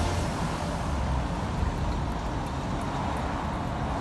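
City street traffic: a steady noise of cars driving past.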